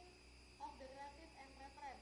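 Faint, indistinct speech in the background over a steady low hum.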